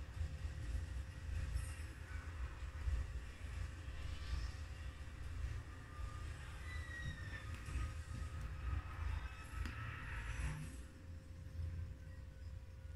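A horror film's soundtrack heard through a television speaker: a steady, low, dark rumble with faint music over it.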